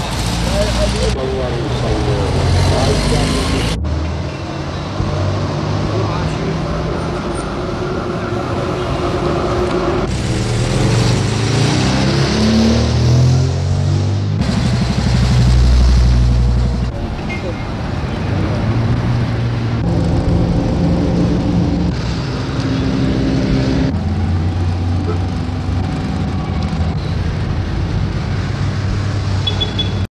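Old film soundtrack made of a mix of voices, traffic and music. It changes abruptly several times as the footage cuts from one clip to the next.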